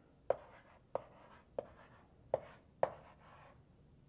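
Chalk writing on a chalkboard: five short, sharp taps and strokes of the chalk against the board in under three seconds.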